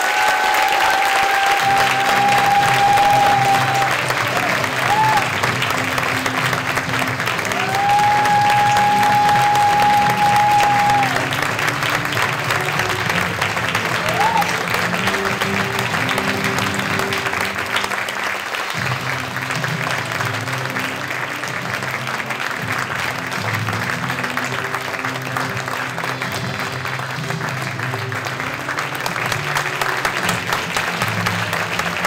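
Audience applauding steadily over background music with low stepping notes. Two long, high held notes sound, one at the start and another about eight seconds in.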